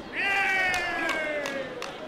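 A fighter's long, high shout (kihap) that slowly falls in pitch, at a taekwondo exchange that scores, with several sharp knocks during it.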